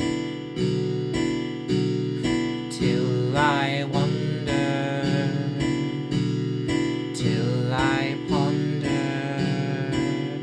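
Improvised music: an acoustic guitar strummed at an even pulse of about three strokes a second. A high wavering line slides up and down over it twice, about three and about seven seconds in.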